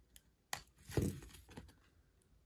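A plastic-coated trading card being bent and torn by hand: a sharp crack about half a second in, then a louder crackle about a second in and a few fainter ones after, the plastic top layer resisting the tear.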